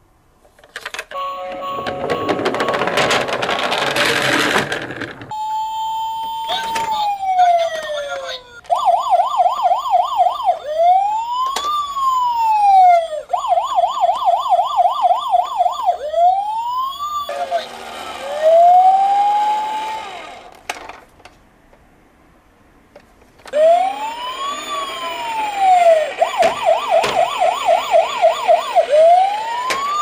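Toy police car's electronic siren playing through its small speaker: slow rising-and-falling wails alternate with fast yelping warbles of about four a second. A noisier electronic sound effect plays near the start and again in the middle, followed by a pause of about three seconds before the siren resumes.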